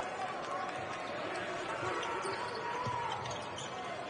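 Basketball dribbled on a hardwood court, heard over the background noise of the arena.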